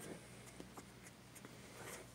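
Faint rustling and small scattered clicks as a hand handles puppies on a fleece blanket, over a low steady hum.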